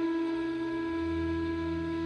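Background flute music: a flute holds one long, steady note, and a low sustained accompaniment comes in beneath it about a second in.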